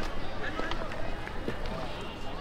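Street ambience with people talking in the background and a few light clicks.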